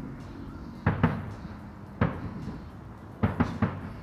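Distant fireworks bursting: six sharp bangs with short echoing tails. Two come close together about a second in, one at two seconds, and three in quick succession a little past three seconds.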